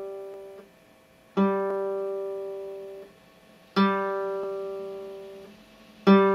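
Open G (third) string of a nylon-string classical guitar plucked as a reference pitch for tuning. A note already ringing at the start fades out, then the string is plucked twice more, a bit over a second in and near four seconds in, each note ringing and dying away.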